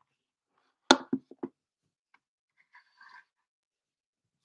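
Handling noise from a webcam being gripped and set in position: one loud knock about a second in, three quicker, softer thumps right after it, then faint rustling.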